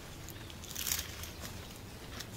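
Faint rustling of grass and weed stems handled by hand close to the ground, a couple of soft rustles over a low steady hum.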